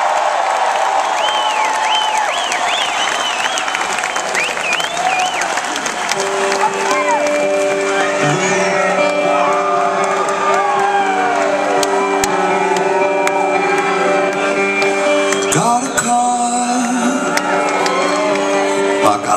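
Concert crowd cheering and whistling; from about six seconds in, an electric guitar starts playing slow, held, ringing chords under the cheering.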